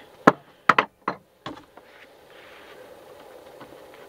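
A few light, sharp clicks and knocks in the first second and a half, then only a faint steady hiss: a hand handling the TV set and its plastic back panel near the camera.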